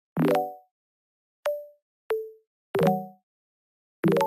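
A series of short pitched plop sound effects, each a quick popping note that dies away within half a second. Four come at uneven spacing, with dead silence between them, and a fifth starts right at the end. The notes differ in pitch, some single and some richer.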